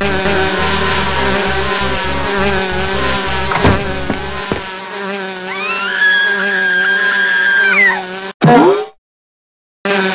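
Cartoon bee-swarm buzzing sound effect, a steady drone, over background music with a pulsing bass line for the first half. Near the end a whistle-like tone rises, holds and falls, a quick downward swoop follows, and the sound cuts out to silence for about a second.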